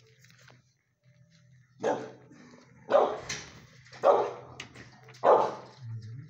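A dog barking four times, about a second apart.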